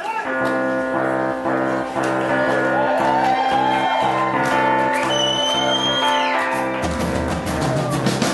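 A live rock band playing a song's opening: an electric piano sounds steady repeated chords, with a gliding line and a high held tone above it in the middle. The low end fills out near the end as the band begins to come in.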